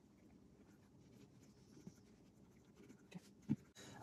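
Near silence, with a few faint light taps near the end as small plastic seat guide parts are handled.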